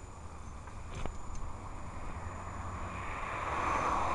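Wind buffeting a handheld camera's microphone on a moving bicycle, with a few sharp rattling clicks about a second in. A rushing noise swells near the end.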